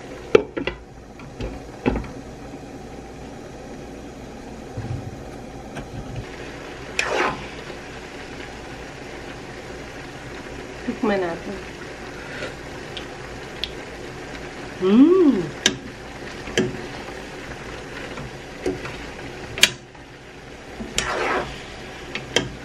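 Noodles and vegetables cooking in a wok with a steady low bubbling hiss. A wooden spatula and metal spoon stir and scrape through the food, with a few sharp clicks of the utensils against the pan.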